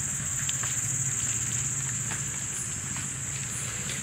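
Crickets chirring steadily in one high continuous tone, over a low steady hum.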